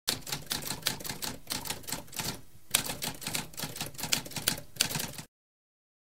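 Manual typewriter typing: a fast run of keystrokes with a brief pause about halfway, stopping about five seconds in.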